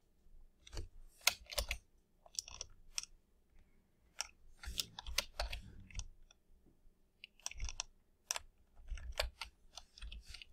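Typing on a computer keyboard: uneven runs of key clicks with short pauses between them.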